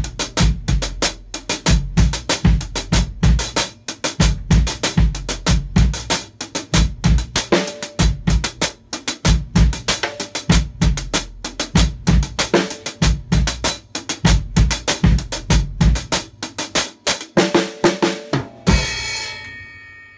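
Drum kit playing a timba intro groove: a güiro-based pattern on the hi-hat with accents on the kick drum and snare. Near the end it stops on a cymbal crash that rings out and fades.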